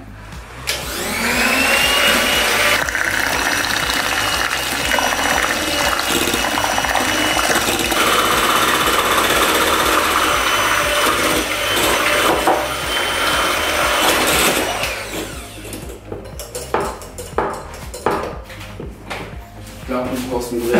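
Electric hand mixer spinning up with a rising whine about a second in, then running steadily as its beaters churn thick cream cheese batter in a glass bowl; it gets quieter after about fifteen seconds.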